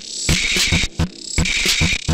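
Modular synthesizer electronic noise music, filtered through a Sherman Filterbank: a fast, uneven beat of short low thumps with bursts of hissing noise between them.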